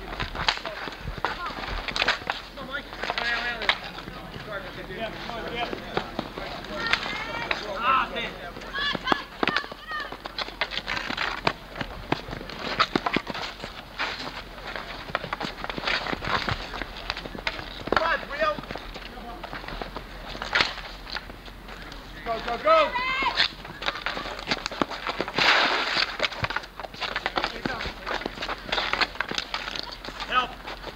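Players shouting to one another across an outdoor street hockey game, with frequent sharp clacks of hockey sticks hitting the ball and the asphalt court.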